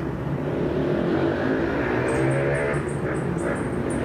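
An engine running steadily, a low hum that holds one pitch.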